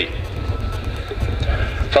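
Low, steady rumble of a formation of six Pilatus PC-9 turboprop trainers flying overhead.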